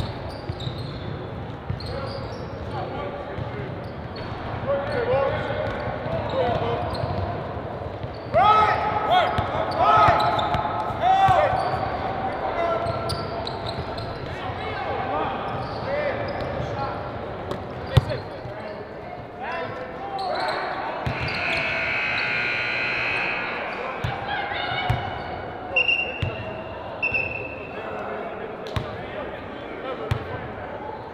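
Basketball bouncing on a hardwood gym floor, with sneakers squeaking and players calling out, echoing in a large hall. A cluster of short, sharp squeals comes about eight to twelve seconds in.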